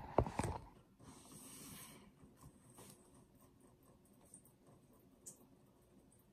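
A hand knocking and rubbing against the recording device, a few sharp clicks in the first half-second, followed by a soft rustle and then a couple of faint taps in near quiet.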